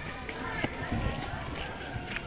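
Outdoor background chatter of schoolchildren's voices, several talking at once with no clear words.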